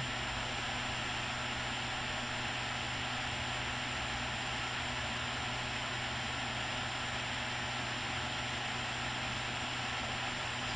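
Steady background hiss with a low, even hum underneath, and no other events: the constant noise floor of a home recording setup.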